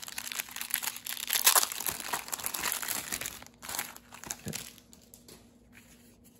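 Clear plastic wrapping crinkling as it is worked off a stack of trading cards. The crinkling is dense for the first three seconds or so, then gives way to fainter card handling.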